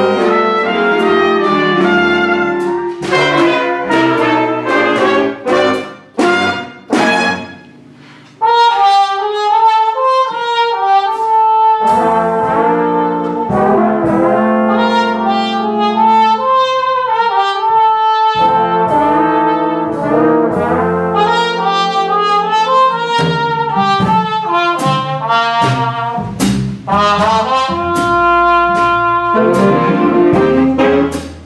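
Jazz big band playing: a trumpet leads at first over saxophones and brass. The sound thins out and drops briefly about six to eight seconds in, then the full ensemble comes back in.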